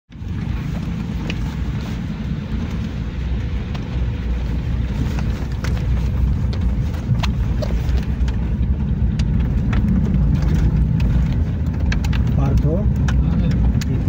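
Inside a car driving over a rough, unpaved road: steady low engine and tyre rumble, with scattered short knocks and rattles from the bumps.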